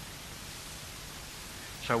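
Steady background hiss of a speech recording during a pause, with a man's voice starting to speak near the end.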